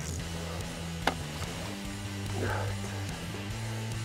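Background music led by guitar over steady low bass notes, with a single sharp click about a second in.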